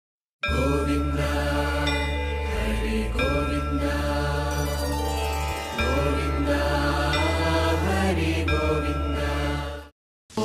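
Devotional intro music: a chanted Sanskrit mantra over a steady low drone. It starts about half a second in and fades out just before the end.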